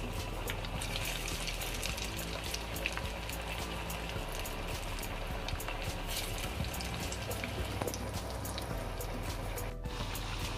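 Vadai batter deep-frying in hot oil in a kadai: a steady sizzle full of small crackles and pops. It cuts out briefly just before the end.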